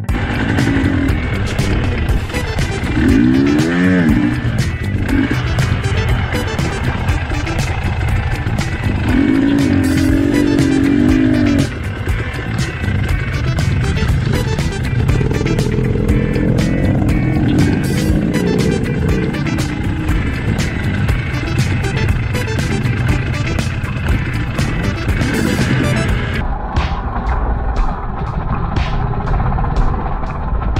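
Two-stroke dirt bike engine riding a trail, revving up and down, with background music playing over it.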